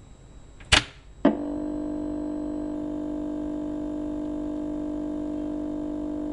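Intro sound effects: a short whoosh burst just under a second in and a sharp hit half a second later, then a steady electronic drone of several held tones.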